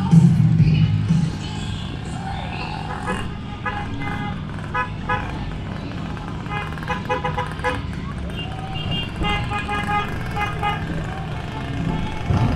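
Vehicle horns beeping in many short toots at several pitches, in quick clusters, over a steady low engine rumble as a motorcade of motorcycles and a pickup truck moves off. A loud low drone fills the first second or so.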